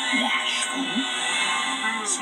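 Trailer music playing through a TV's speaker. A cartoon character gives a few short vocal sounds in the first second.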